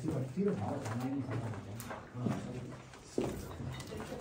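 Low, murmured men's voices talking quietly, with a brief sharp click near the end.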